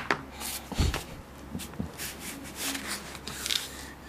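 Light scuffing and rubbing as a toddler gets down onto a tiled floor and crawls on hands and knees, with a dull thump about a second in.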